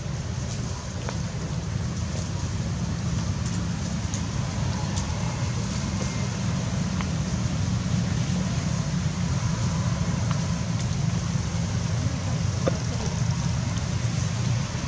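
Steady low rumbling background noise with a faint hiss and a few soft clicks.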